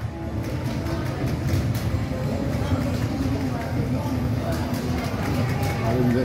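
Casino floor din: electronic music and short game tones from slot machines, with chatter in the background.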